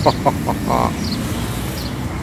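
Steady low rumble of road traffic, with a few short pitched calls, like a bird's, in the first second.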